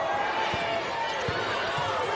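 Arena crowd noise with a basketball being dribbled on a hardwood court, the ball's bounces heard as a couple of short thumps.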